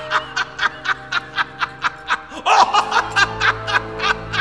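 A man laughing hard in quick, even bursts, about four a second, swelling louder about two and a half seconds in. Background music with held notes plays underneath.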